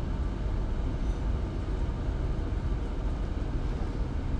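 Steady low rumble of room background noise, like a ventilation system, even and unbroken with no distinct events.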